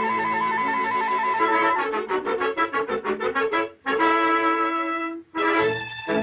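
Orchestral cartoon score led by brass: a fast trill, then quick repeated staccato notes and a held chord. After a brief break near the end, a new brassy passage starts, in the manner of a trumpet fanfare.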